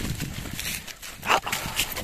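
A playing dog gives one short vocal sound a little over halfway through, amid rustling and rumbling noise as it romps in dry leaves close to the microphone.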